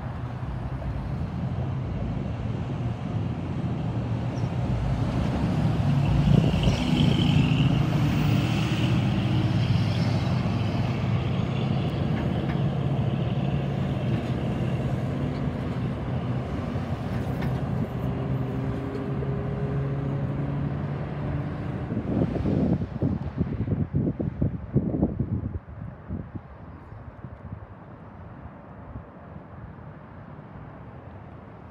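Traffic on a busy multi-lane city street: cars and trucks passing steadily, loudest about six to ten seconds in, with a brief high squeal. Near the end there are a few seconds of rough, uneven rumbling, and then the sound drops to a quieter steady background hiss.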